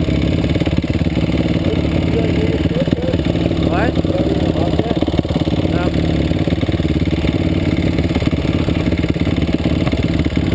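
Dirt bike engines idling steadily at close range, with a short rising rev about four seconds in.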